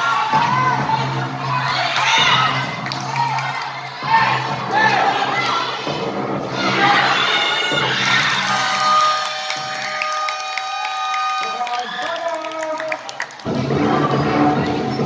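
A basketball crowd shouting and cheering, many high voices at once, with music underneath. In the second half a held, steady chord-like tone runs for about four seconds and ends abruptly.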